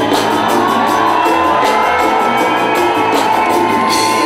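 Live band playing loud music, with keyboards, guitar and drums keeping a steady beat under a long held note.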